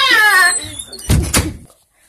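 A child's drawn-out wail falling in pitch, then a door banging twice, loudly, about a second in.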